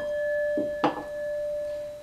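Brass singing bowl struck with a wooden striker and ringing with one steady, pure tone. It is struck again a little under a second in, and the ring carries on.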